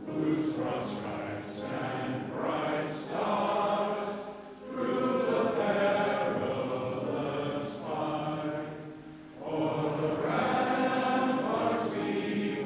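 A large crowd of people singing together in unison, in long held phrases with short breaks between them.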